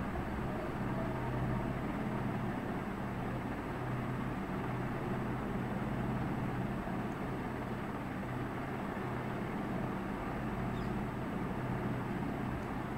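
Steady low background hum with a faint hiss, even throughout, with no distinct events.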